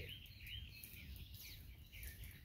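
Faint bird chirps, a few short calls in about the first second, over low steady outdoor background noise.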